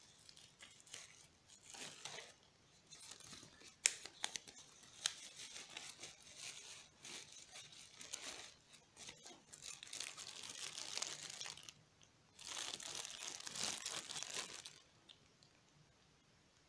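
Clear plastic bag and bubble wrap crinkling and rustling as hands pull a wristwatch out of its packaging, with a sharp click about four seconds in. The rustling comes in uneven bursts and is loudest in two long stretches in the second half, then stops shortly before the end.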